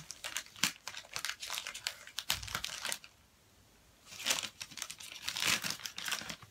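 Paper bag crinkling and rustling as it is worked open by hand, in two spells with a pause of about a second in the middle.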